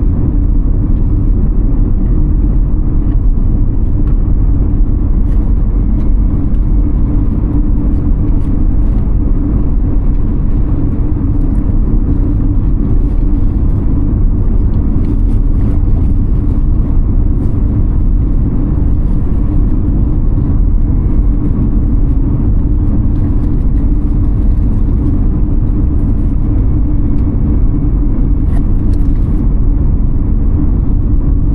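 Steady low rumble of a car driving at a constant speed on an asphalt road, mostly tyre and road noise.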